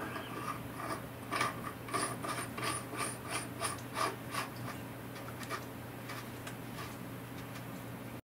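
Steel spindle nut carrying the rev-counter magnet being screwed by hand onto the threaded end of a Boxford lathe spindle: light metallic clicks and rubbing, about three a second, that stop about five and a half seconds in. A steady low hum runs underneath.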